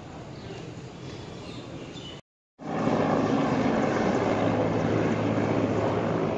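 Steady outdoor background rumble with a low hum. It starts quiet, drops out briefly at an edit about two seconds in, then comes back louder and stays steady.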